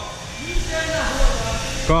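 Men talking in short remarks over a steady background hum.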